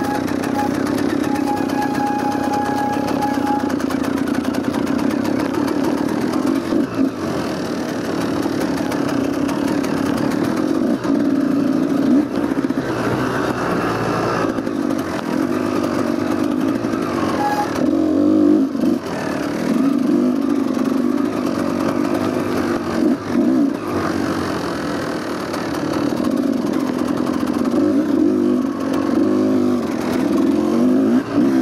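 Off-road dirt bike engine running under varying throttle while being ridden, the revs dropping off briefly several times and picking up again.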